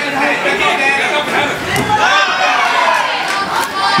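Crowd of fight spectators shouting and chattering, many voices overlapping at once.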